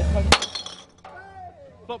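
A single sharp click about a third of a second in. A low rumble stops abruptly at the same moment, and faint voices follow.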